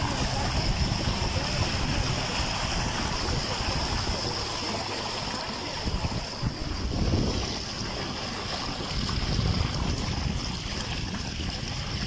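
A small boat under way across floodwater: a steady motor and water noise, with wind on the microphone.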